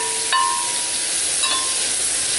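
Sliced onion and grated carrot sizzling in hot vegetable oil in an oval roasting pan while being stirred with a spatula. A thin steady tone sounds through the middle of the sizzle for about a second.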